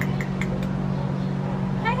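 A steady low machine hum, with a few faint short clicks in the first half second.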